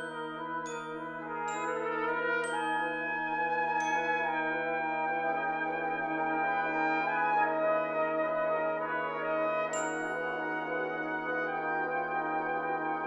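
Brass band playing sustained chords over a held low note, with bell-like glockenspiel strikes ringing out: five in the first four seconds and one more near ten seconds.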